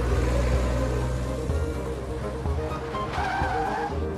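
A motor vehicle running, with a short squeal about three seconds in.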